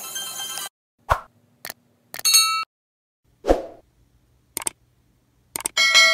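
Background music cuts off under a second in. Then come subscribe-button animation sound effects: two soft pops, sharp mouse-click sounds, and two short bright chimes, the second near the end as the bell icon is clicked.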